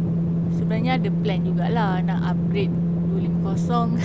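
KTM 250 Duke's single-cylinder engine running at a steady high-speed drone while cruising at about 156 km/h, with wind rushing over the rider.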